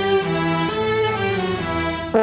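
A student symphony orchestra's string section playing sustained notes that move from chord to chord about every half second, as accompaniment in a French horn concerto.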